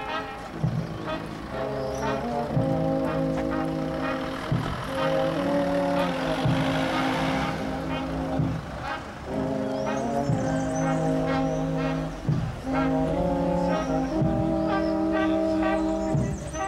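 Brass band playing a slow march in long held chords with short breaks between phrases. A car passes about halfway through.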